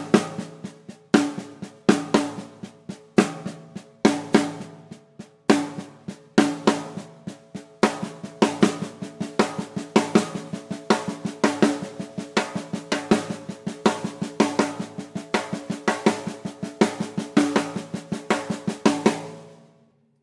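Snare drum played with the left hand in steady sixteenth notes: quiet ghost notes with pairs of accents struck as rim shots, over a quarter-note bass drum and a foot-played hi-hat. The strokes grow busier about eight seconds in and stop just before the end.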